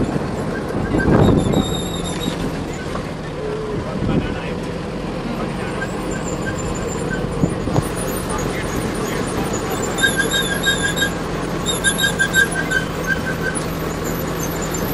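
A road vehicle's engine running steadily while driving, heard from inside the vehicle. From about ten seconds in, runs of short high chirping notes repeat several times.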